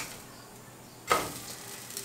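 A slice of egg-stuffed bread flipped with a spatula in a hot buttered nonstick frying pan: quiet at first, then a sudden soft slap about a second in as the bread lands on its uncooked side, dying away into a faint sizzle.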